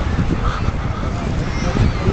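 Wind buffeting the microphone, a steady low rumbling noise, with no clear pitched sound standing out.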